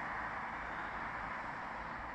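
Steady road noise of a car driving away along an asphalt road, easing off slightly.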